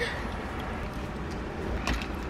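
Steady low rumble of a car's cabin while parked with the vehicle running, with a short rustle near the end.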